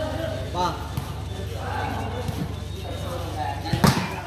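Spectators' voices and chatter, with one sharp, loud slap of a hand striking a volleyball near the end.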